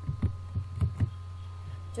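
Steady low electrical hum with a faint high whine, under several short soft knocks and clicks in the first second or so, the loudest two close together near one second: the sound of the computer being worked near the microphone as the program window is opened and maximised.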